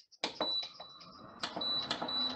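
Induction burner heating a pan, giving off a steady high-pitched electronic whine that breaks off briefly about midway and then resumes.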